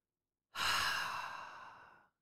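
A man's long sigh into a close microphone. It starts suddenly about half a second in and fades away.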